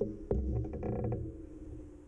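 Handling noise: a sharp click at the start and another shortly after, low knocks, and a brief creak about a second in, over a steady low hum that fades out.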